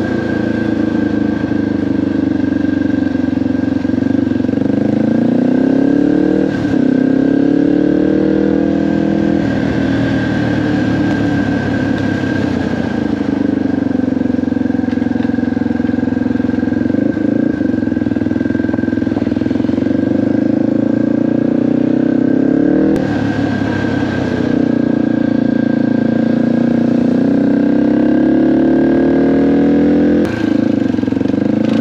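Dirt bike engine heard from on board while riding, its pitch climbing under throttle and dropping at gear changes several times.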